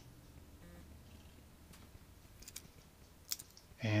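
Quiet room tone with a few faint, sharp clicks, the last and loudest a little before the end.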